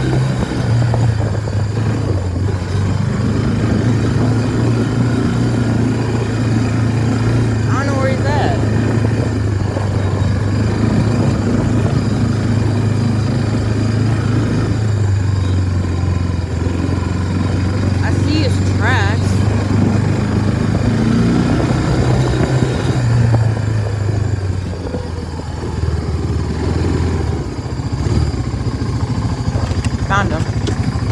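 Four-wheeler (ATV) engine running steadily while riding, its pitch stepping up and down as the throttle changes, easing off briefly near the end.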